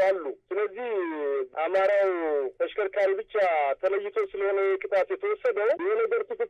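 Speech only: one person talking continuously in Amharic, with a thin, phone-like sound.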